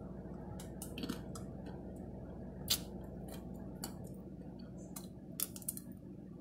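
Biting and chewing a chocolate-dipped Dairy Queen Dilly Bar: the hard chocolate shell cracks and crunches in scattered, irregular sharp crackles, over a faint steady hum.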